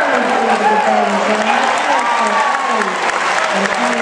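A crowd in an indoor arena applauding steadily, with voices over the clapping.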